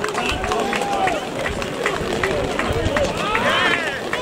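A small crowd of football spectators shouting and calling out in celebration of a goal, with scattered handclaps and a louder call near the end.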